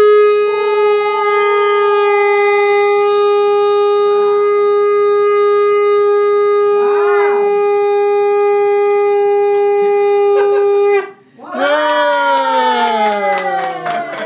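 A shofar blown in one long, steady, loud blast that holds a single pitch for about eleven seconds and then breaks off. After a short gap, a second pitched sound slides downward near the end.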